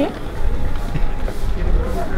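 Low, uneven wind rumble on the microphone, with faint voices in the background.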